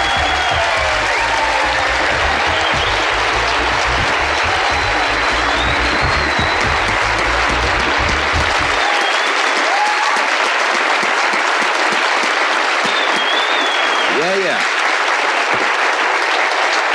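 Studio audience applauding steadily, with music with a low steady beat playing under it that stops abruptly a little past halfway.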